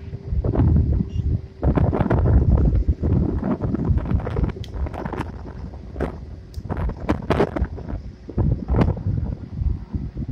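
Wind buffeting the microphone of a camera riding on a moving bicycle's handlebars, a heavy uneven rumble with scattered clicks and rattles as it rolls along the road.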